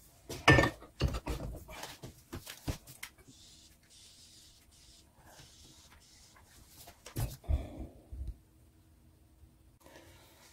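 Light metal knocks and clinks as a hammer head is handled and clamped in a steel bench vise: a cluster of knocks in the first three seconds and another about seven seconds in, quiet between.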